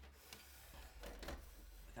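Faint knocks and rubbing from a stereo receiver being handled and turned around on its shelf, over a low steady hum.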